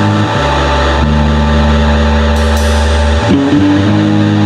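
Hardcore punk band playing: electric guitar and bass holding sustained chords, changing chord about a third of a second in and again near the end, with no vocals.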